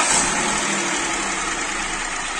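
Peugeot 301 petrol engine just started, running steadily at idle on test after repair of its engine computer, the fault that had left it running on two cylinders.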